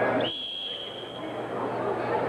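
Referee's whistle blown once, a single steady high blast of about a second and a quarter, starting the wrestling bout. The hall's background chatter drops away while it sounds.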